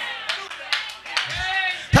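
A few scattered hand claps from the congregation, with a voice calling out briefly in the middle.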